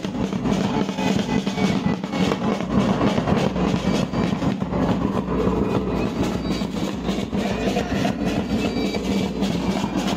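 Wedding band drummers playing side drums and a big bass drum in a loud, dense, continuous rhythm.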